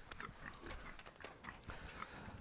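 Pigs grunting faintly and snuffling as they root around, with scattered small clicks and knocks.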